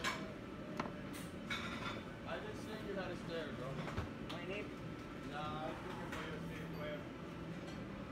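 Restaurant kitchen at work: indistinct voices, with metal tongs and dishes clinking sharply a few times, mostly in the first couple of seconds, over a steady low hum.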